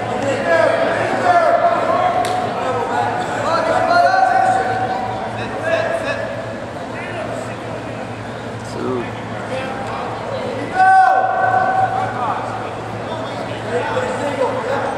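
Voices shouting in a gymnasium during a wrestling bout: a run of long, drawn-out yelled calls, the loudest starting suddenly about eleven seconds in. A steady low hum runs underneath.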